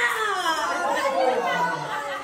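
Several people's voices chattering over one another, speech only.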